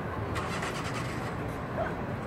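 A motor vehicle engine running with a steady low hum. A short rattly burst comes about half a second in.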